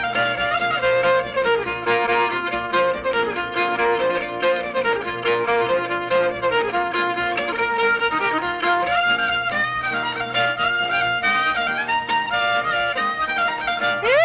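Old-time fiddle tune played on fiddle with guitar accompaniment, a continuous lively melody on an old field recording.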